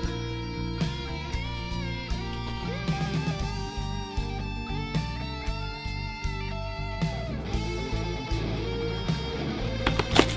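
Background music led by electric guitar, with held notes that bend in pitch over a steady low bass.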